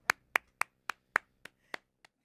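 Sharp hand claps in a steady series, about seven of them at a little over three a second, slowing slightly.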